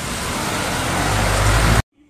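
Heavy rain pouring down, a loud steady hiss with a deep rumble underneath, growing slightly louder and cutting off suddenly near the end.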